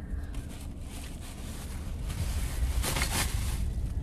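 Plastic trash bag rustling and crinkling as it is pulled about and ripped open, loudest about three seconds in, over a steady low rumble.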